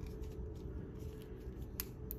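Faint handling of a plastic action figure, the Marvel Legends Strong Guy build-a-figure, as it is turned and posed in the hands, with a sharp click near the end.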